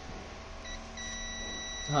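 Digital multimeter's continuity buzzer giving a short blip, then a steady high beep from about a second in as the probe touches an ECM connector pin. The beep signals continuity between that pin and the board's ground, marking it as a ground pin.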